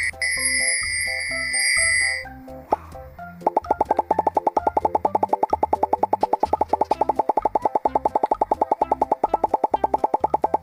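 Light cartoon music with a shimmering, bell-like sparkle tone for the first two seconds. From about three and a half seconds in comes a rapid, even run of cartoon pop sounds, about eight a second, that goes with popcorn popping on screen.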